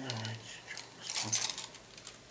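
Injection-moulded plastic model-kit sprues clicking and rattling as they are handled and laid on top of one another, in two short bursts: at the start and again about a second in.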